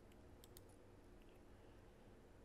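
Near silence: room tone, with a few faint mouse clicks about half a second in.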